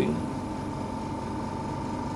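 Steady mechanical hum with a constant whine of an oxygen concentrator running and supplying the anaesthetic gas line.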